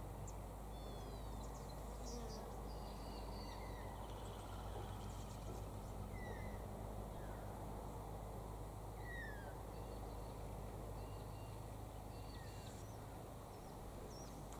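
Wild birds giving scattered short, falling chirps over a steady low outdoor rumble.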